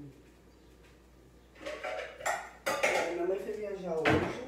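Dishes and cutlery clattering as they are handled on a kitchen counter, beginning about a second and a half in, with a couple of sharp clinks.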